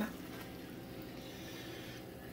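Faint, steady sizzling of hot oil in a frying pan with cornbread frying in it.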